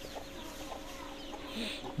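Young chickens peeping in quick, short, falling chirps, with a hen clucking now and then.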